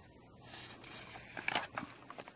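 Paint-coated paper pages of a small art journal rustling and crackling as a page is turned by hand, starting about half a second in, with a few sharp crinkles, the loudest a little after the middle.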